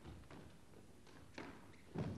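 Faint, sparse knocks of squash play: racket strikes, the ball hitting the walls and footsteps on the court floor. The clearest knock comes about one and a half seconds in.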